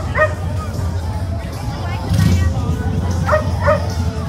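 Short high yips in two quick pairs, one at the start and one near the end, typical of a small dog. They sound over outdoor background music and crowd chatter.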